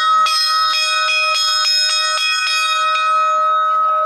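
A newly consecrated church bell struck by hand in quick succession, about three strokes a second, in its first ringing. The strokes stop a little after three seconds in and the bell's tone rings on.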